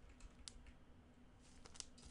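Faint, scattered light clicks and ticks of trading cards and hard plastic card cases being handled by gloved hands, with a quick cluster of clicks near the end.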